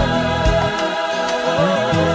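Praise-and-worship music: a choir singing held notes over instrumental accompaniment, with a moving bass line and a few sharp beats.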